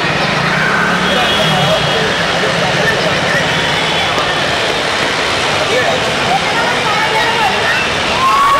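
Steady, loud outdoor background noise with indistinct distant voices mixed in.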